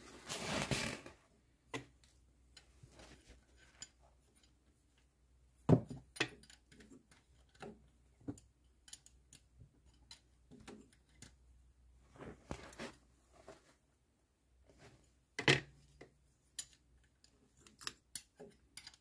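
Scattered light clicks, taps and rattles of hands and metal parts being handled while working the old timing belt off a VW AUC/AUD engine's crankshaft sprocket, with two sharper knocks, one about six seconds in and one near the end.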